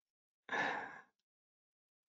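A person's short breath, about half a second long, fading away.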